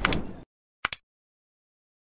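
Subscribe-button animation sound effects: a short swish, then a quick double mouse click just before a second in.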